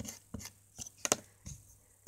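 Several light clicks and taps of makeup items and a brush being handled and picked up, the sharpest a little after a second in.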